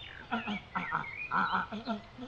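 Pinkfoot Hammer goose call blown from one side, giving the low-pitched pink-footed goose sound as a quick run of about five short notes.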